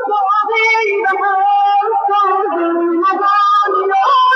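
A song: a high voice sings a melody in long held notes that glide between pitches.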